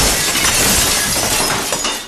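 A loud crash-like burst of noise that starts suddenly out of silence, stays loud for about two seconds, and begins to fade near the end.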